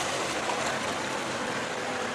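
Steady rushing background noise, even throughout, with no distinct events.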